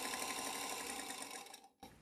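Domestic sewing machine stitching at a steady speed while fabric pieces are fed through it one after another in chain piecing. It stops about one and a half seconds in.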